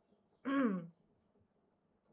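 A woman clearing her throat once: a short voiced sound falling in pitch, about half a second in.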